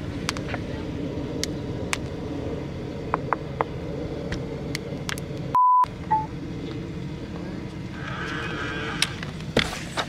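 Fingers tapping a Yale smart lock's keypad, a series of sharp, irregular clicks over a steady outdoor hum. About halfway the sound cuts out for a steady test-tone beep, the TV colour-bars edit effect. Near the end a short whir as the lock's motorized deadbolt draws back, then the door lever is pressed.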